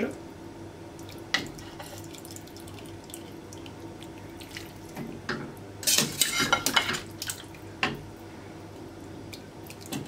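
Cooking water dripping and splashing back into a pot as boiled dumplings are scooped out with a stainless steel skimmer, with scattered clinks of the skimmer against the pot and serving plate. The busiest clatter and splashing comes about six to seven seconds in.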